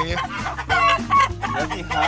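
Game chickens clucking and calling, a string of short pitched calls.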